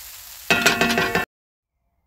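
Ground beef in BBQ sauce sizzling in a steel pan, then a loud metallic ringing clang for under a second that cuts off abruptly into silence.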